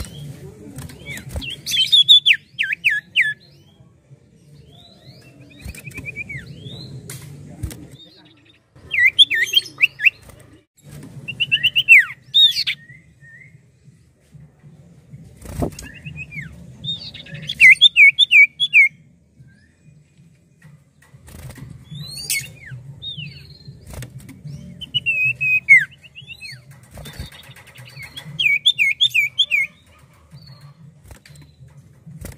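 Caged common iora singing bouts of quick, downward-slurred whistled notes, each run lasting about a second, repeated every few seconds. Scattered clicks come from it moving about the cage, and a low steady hum runs underneath.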